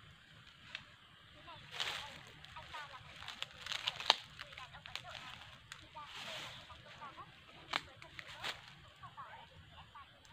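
Scattered rustles and crackles of dry leaf litter, with a few sharp clicks, the loudest about four seconds in, and faint short chirps.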